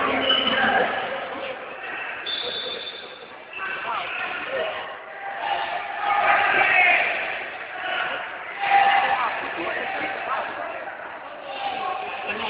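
Voices calling out and shouting in a large sports hall, rising and falling, loudest about six to seven seconds in and again near nine seconds. A short, steady high tone about two seconds in, fitting a referee's whistle.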